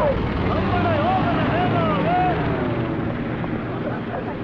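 A lorry's engine running as it drives past, with raised voices of a crowd shouting over it.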